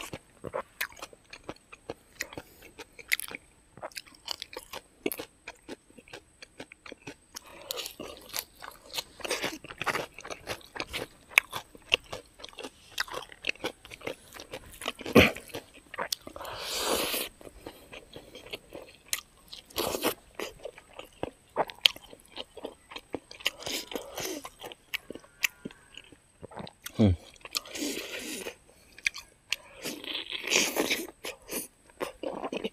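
Close-miked chewing and lip-smacking of a person eating smoked pork and rice by hand: a steady run of short wet clicks, with a few louder mouthfuls.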